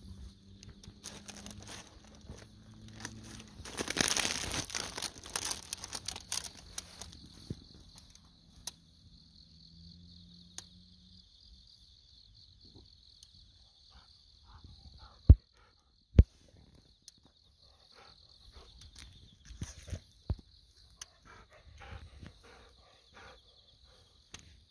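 Autumn night insects chirping steadily in a high, even band. A burst of rustling and crinkling comes about four to seven seconds in, and two sharp knocks come a little past the middle.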